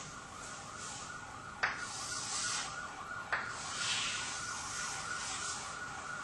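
Chalk scraping across a blackboard while a bell curve is drawn, a steady high scratchy hiss with a thin steady tone in it, and a sharp tap as the chalk meets the board about a second and a half in and again at about three seconds.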